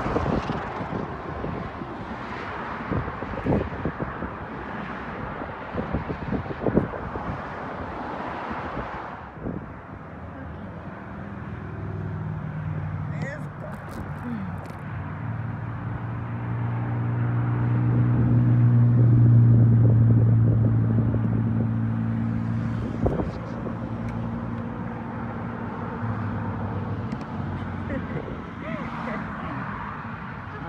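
Wind rushing and buffeting on the microphone of an electric scooter ridden at speed. From about ten seconds in, a low engine drone from a passing motor vehicle swells, peaks about twenty seconds in and fades away.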